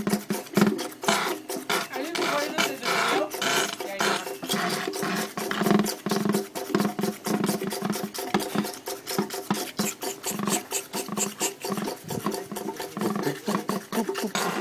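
Belt-driven vacuum pump running, giving a rapid, even rhythm of pulses over a steady droning tone.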